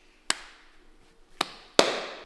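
Three sharp hand slaps of a slap-and-clasp handshake, the last the loudest.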